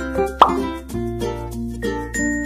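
Light background music of plucked and chiming notes over a steady bass, with a short, loud "plop" sound effect that sweeps upward in pitch about half a second in.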